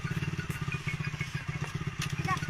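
Motorcycle engine running steadily at a fast idle, an even rapid run of firing pulses, while its rear wheel drives a belt to turn over an old stationary diesel engine to start it.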